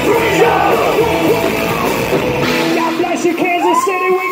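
Live rock band playing loudly with yelled vocals. About two and a half seconds in, the drums and bass stop as the song ends, and yelled voices rising and falling in pitch carry on.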